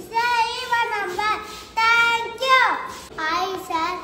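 A young boy singing in a high voice: held notes, each ending in a sharp downward slide.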